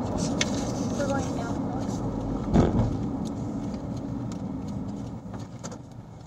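Low, steady road and engine rumble of a moving car heard from inside the cabin, with a brief louder thump about two and a half seconds in, growing quieter toward the end.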